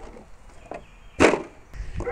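A single short, sharp knock a little over a second in, with a fainter tick before it, as hands handle the RC rock racer on the grass.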